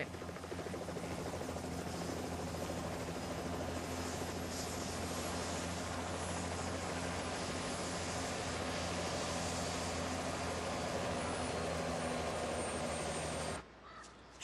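Helicopter engine and rotor running steadily as it sets down on the ground, then cutting off suddenly near the end.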